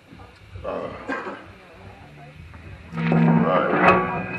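Shouting and yelling voices in a small club, with a louder burst about three seconds in that carries a held low note from the stage's instruments.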